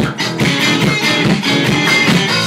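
Live three-piece rock band playing a stretch without vocals: electric guitar, bass guitar and drums, with the drums keeping a steady beat of about four strokes a second. Recorded on a phone's microphone.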